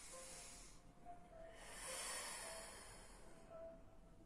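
A woman's audible breathing: a short breath at the start and a longer one from about a second and a half in, timed to a slow side-lying pilates rotation. Faint background music underneath.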